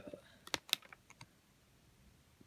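A few light clicks and crackles from a model kit's plastic runners being handled in their clear plastic bag, bunched between about half a second and a second in.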